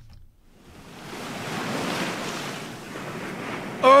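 Ocean surf washing onto a beach, swelling up from quiet within the first second and rising and falling. Near the end a man's unaccompanied voice begins singing a held "oh".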